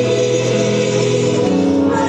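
Mixed vocal group of two men and two women singing into microphones, holding sustained notes in harmony; the chord changes about one and a half seconds in.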